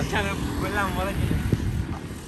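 A man talking, with the rumble of a motor vehicle passing along the road.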